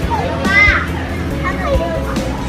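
A child's high-pitched voice calling out, loudest about half a second in with a shorter call near the end, over steady background music.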